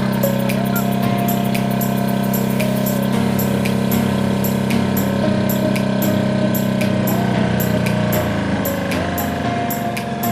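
Motorized outrigger boat's engine running steadily while the boat is under way, its tone shifting about eight seconds in.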